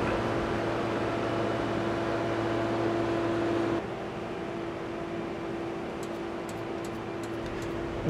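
Roadtec asphalt paver running steadily: a constant mechanical hum with a steady tone over it. The sound drops to a quieter level about four seconds in.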